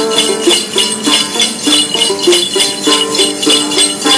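Đàn tính, the long-necked Tày lute, plucked in a repeating stepwise melody, with a cluster of small bells (xóc nhạc) shaken to a steady beat: the instrumental accompaniment of Then ritual singing.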